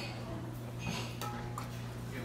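Hot water pumped from a stainless airpot thermos into a ceramic cup, with a short click a little past a second in. A steady low hum runs underneath.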